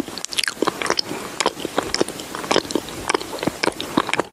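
Eating sound effect: crunchy biting and chewing, a quick, irregular run of crunches.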